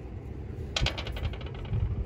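A small hard object clattering, heard as a quick run of sharp clicks that starts about a second in and dies away within half a second, over a low outdoor rumble.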